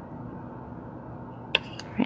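Quiet room tone with a faint steady hum. Near the end come a few light clicks as green masking tape is pressed around a wooden spoon handle.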